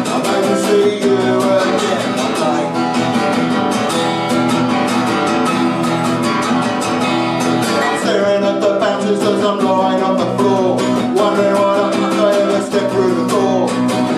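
Steel-string acoustic guitar strummed in a quick, even rhythm, chords ringing on.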